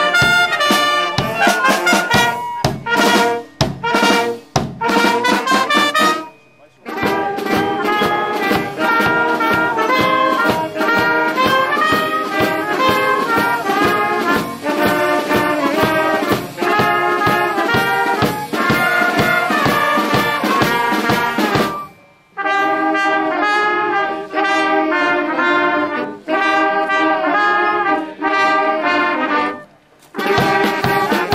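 Brass band of trumpets, saxophones, horns and snare drum playing. It opens with short, drum-struck accented chords, stops briefly about six seconds in, plays a long continuous passage, and pauses again briefly about 22 seconds in before going on.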